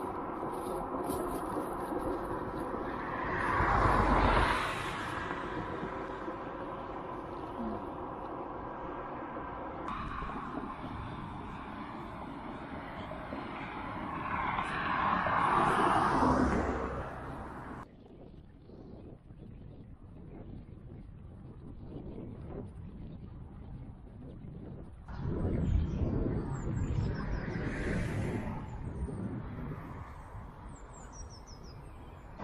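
Road traffic: three cars pass one at a time, each swelling and fading over a couple of seconds, over a steady background hum.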